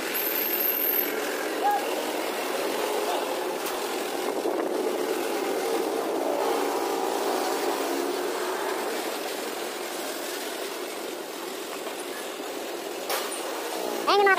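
Street traffic: a steady mix of car engine noise and passing vehicles, easing off a little in the second half.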